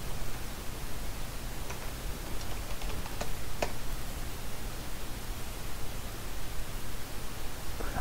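Steady microphone hiss with a low hum, and a few faint computer keyboard keystrokes in the first half.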